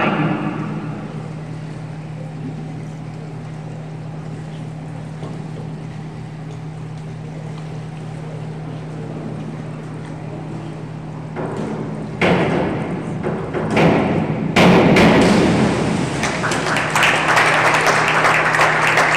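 A springboard dive: the board thumps and rattles under the diver's hurdle and takeoff, then she splashes into the pool and spectators clap and cheer. A steady low hum runs underneath until the dive.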